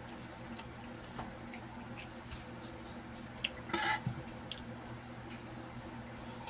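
Scattered small clicks and taps, with one short, louder scraping rustle a little before the four-second mark, over a faint steady low hum.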